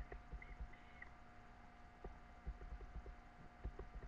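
Faint, irregular clicks and soft taps of computer mouse and keyboard use, over a steady electrical hum, with two brief small squeaks early on.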